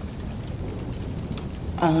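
Steady rain with a low rumble of thunder underneath.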